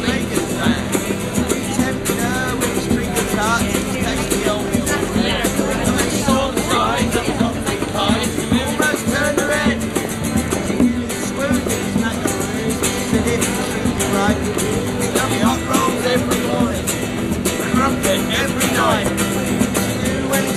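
Two acoustic guitars strummed together with a hand drum keeping time, in an instrumental stretch between verses of a busked folk song.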